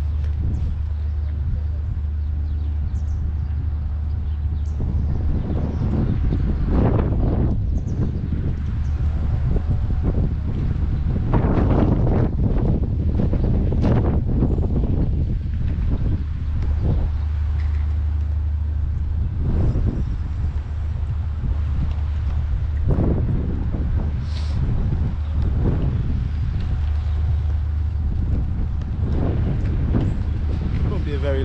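Wind buffeting the microphone: a continuous low rumble that swells in repeated gusts, strongest in the middle of the stretch.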